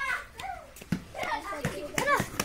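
Children shouting and calling out to each other while playing football, with a few short knocks in between.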